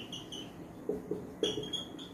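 Marker pen squeaking on a whiteboard while writing a word: a run of short, high squeaks at the start and again in the second half, with a few soft taps of the tip against the board in between.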